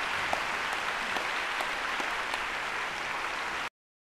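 Audience applauding steadily, cut off suddenly near the end.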